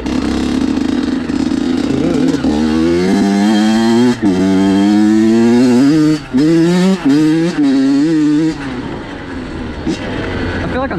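Honda CR85 85cc two-stroke dirt bike engine under throttle on the trail, its pitch climbing and falling repeatedly with several brief sharp drops as the throttle is rolled off, then running lower and quieter near the end.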